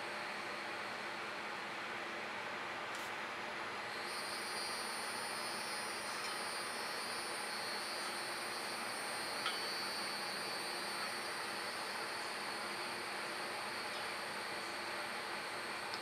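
Steady background hiss with a high, thin insect buzz that comes in about four seconds in and holds steady.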